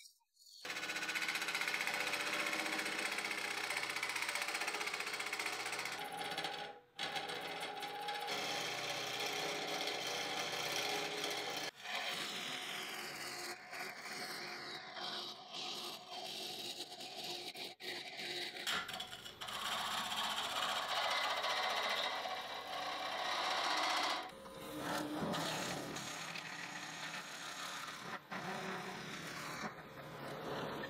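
Hollowing tool cutting the inside of a cherry burl vase turning on a wood lathe: a steady, rough scraping of steel on spinning wood, broken off briefly a few times.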